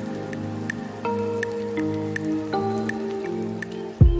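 Background music: soft held chords that change twice, with a light, regular tick about three times a second.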